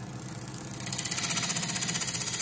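Wood lathe spinning a wood blank as a turning gouge is brought onto it, its bevel rubbing and the edge starting to cut: a quiet hum at first, then from about a second in a louder rasp in rapid, regular pulses.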